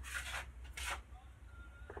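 Two brief scrubbing rubs of a watercolour brush being worked in the palette to mix paint, over a low steady hum.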